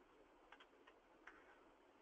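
Near silence: faint background hiss with a few faint short ticks.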